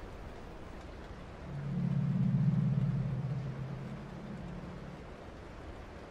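A low droning tone swells in about a second and a half in, holds briefly and fades away over a few seconds, over faint hiss.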